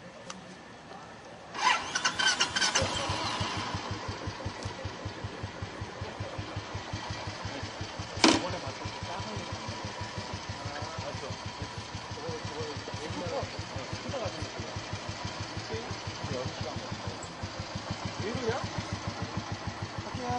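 A motorcycle engine is started about a second and a half in, then settles into a steady, evenly pulsing idle. A single sharp click comes about eight seconds in.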